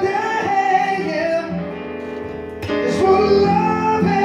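Live male vocal with acoustic guitar: the singer holds long, high notes with no clear words over strummed acoustic-electric guitar.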